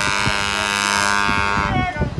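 Dixieland street band's horns holding one long buzzy chord that cuts off sharply near the end, followed by voices.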